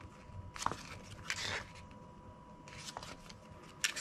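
Pages of a folded paper instruction booklet being handled and turned, giving a few short rustles of paper.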